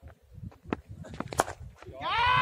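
Cricket bat striking the ball with one sharp crack about one and a half seconds in, after a run of light knocks from the bowler's footsteps on the run-up. Wind rumbles on the microphone.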